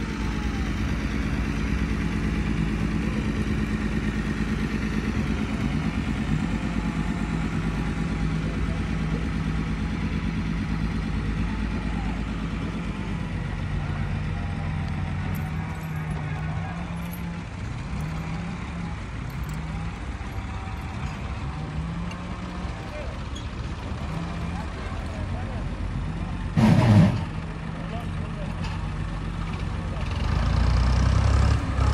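A heavy truck engine idling steadily, with people's voices in the background. A loud, brief burst near the end.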